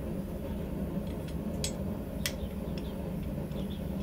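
Steady low hum of a running workshop with two light metallic clicks, about a second and a half and two and a quarter seconds in, as blacksmith's tongs handle a steel bar being set into a fuller tool.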